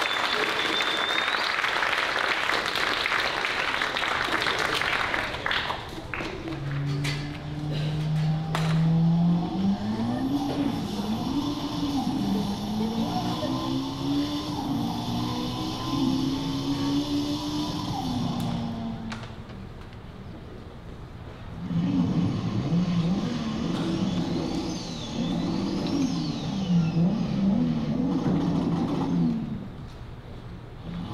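Audience applause for the first few seconds, then recorded car-engine sound effects revving up and down over and over, easing off about twenty seconds in before the revving picks up again.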